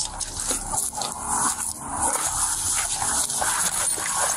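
Rustling and wind-like handling noise on a police body camera's microphone as the wearer moves, with faint scattered knocks.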